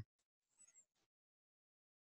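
Near silence: a pause between spoken sentences.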